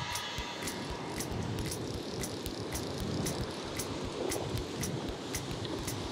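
Fly reel's click-and-pawl drag ticking in an uneven string of sharp clicks, about four a second, as line runs through the reel with a big fish on.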